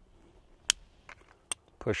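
A sharp metal click about two-thirds of a second in, then two fainter ticks, as a Radian Afterburner steel compensator is slipped onto the muzzle end of a Ramjet pistol barrel.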